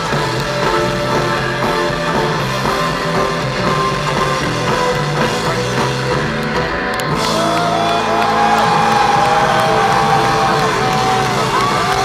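Live rock band with electric guitar and violin playing an instrumental passage. About seven seconds in the texture changes, and long high notes that slide from pitch to pitch come in over the band.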